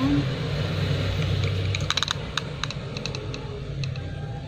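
Handling of a cardboard-and-plastic eyeshadow palette box, giving a quick run of small clicks and taps in the middle, over a steady low hum.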